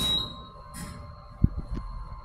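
Otis elevator's electronic signal beep: a single high, steady tone that starts sharply with a brief hiss and slowly fades. A dull thump comes about halfway through, over a faint steady hum.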